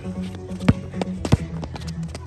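Electronic background music playing, over which a basketball bounces twice on the hard court surface, two sharp hits about two-thirds of a second apart, with a few fainter taps between.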